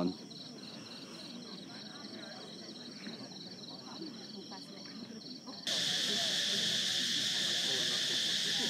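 Crickets chirping in a steady pulsing trill, about three or four pulses a second. A little before six seconds in, the sound switches abruptly to a much louder, dense insect chorus that is really noisy.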